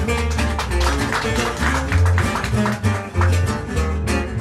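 Gypsy jazz string band playing an up-tempo swing number. An oval-hole Selmer-style acoustic guitar picks fast lead lines over the steady rhythm strumming of a second guitar and a double bass walking below.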